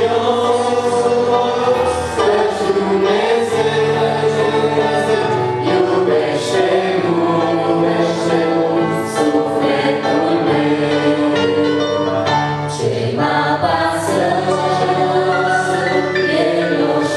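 Mixed male and female voices singing a Christian song in harmony, with held notes, accompanied by a Roland EP-880 stage piano.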